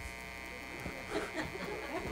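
A pause in speech with a faint steady electrical buzz from the PA system, and a few faint voice sounds about a second in.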